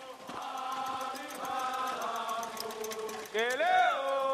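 A voice chanting in long held notes, sweeping sharply upward near the end, over faint rapid clicking.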